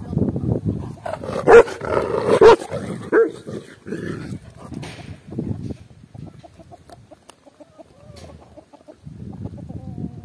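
A large dog barking loudly two or three times close to the microphone, between about one and three seconds in, amid low rustling bursts from its movement. It is much quieter after about six seconds.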